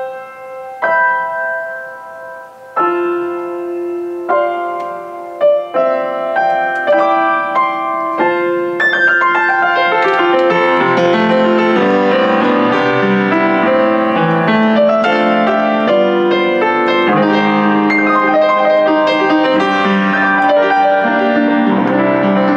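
Steinmayer upright acoustic piano being played with its top lid open, which gives a slightly brighter tone and a little more volume. It starts with slow, spaced notes and chords that ring and die away, then from about nine seconds in moves into a fuller, louder flowing passage.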